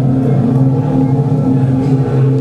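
Loud sustained musical drone: several steady low tones held together as a chord, with no beat or strikes and only a slight waver in level.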